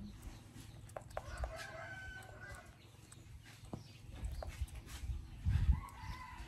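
A rooster crowing once, a little over a second in, one held call lasting about a second. A low rumble comes near the end.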